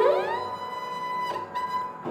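Sarangi bowed solo, playing an old song melody: a note slides upward into a long held tone, a fresh bow stroke comes about a second and a half in, and the sound fades near the end.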